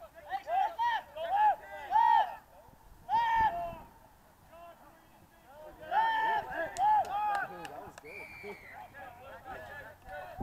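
Rugby players shouting calls across an open pitch during play, in short loud bursts: through the first two and a half seconds, briefly around three seconds in, and again around six to seven seconds, with quieter voices in between.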